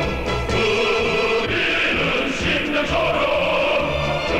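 Large male military choir singing a song in Korean, many voices holding long notes together.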